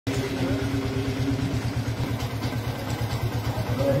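A small engine idling steadily with a fast, even low throb, faint voices above it.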